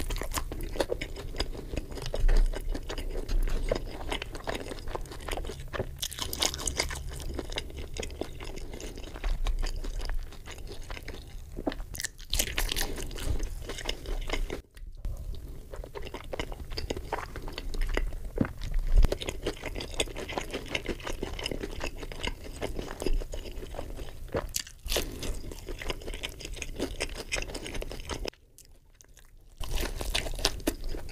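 Close-miked eating: crunchy bites into breaded fried chicken and wet chewing, in a dense run of crackles and smacks. The sound breaks off abruptly a few times, with a brief near-quiet stretch shortly before the end.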